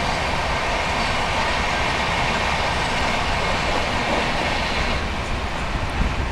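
Express passenger train running at high speed, about 120 km/h, with a freight train alongside on the next track: a steady, loud noise of wheels on rail and moving air, heard from the coach window.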